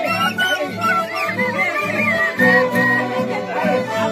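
Andean folk music played live by a small ensemble: an end-blown cane flute and a violin carry a wavering melody over mandolin accompaniment.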